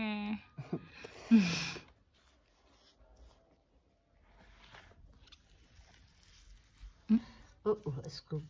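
Voices, mostly untranscribed speech: a voice to just before half a second in and a short louder vocal sound around a second and a half in, then a long nearly silent stretch, and voices starting again about seven seconds in.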